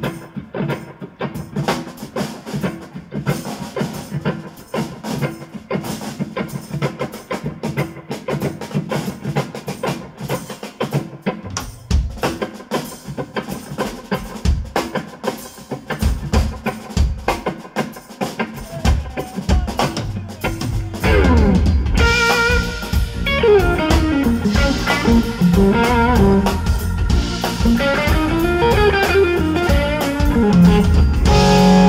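Live blues band playing an instrumental passage: drums and bass lay down a steady groove, then about two-thirds of the way through the full band comes in louder, with a lead line that bends up and down in pitch.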